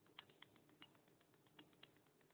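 Faint, irregular clicking of computer keyboard keys, about six light keystrokes in two seconds, against near silence.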